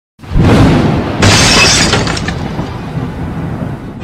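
Two loud crashes: one as the sound begins and a sharper, brighter one about a second later, each ringing out and fading slowly.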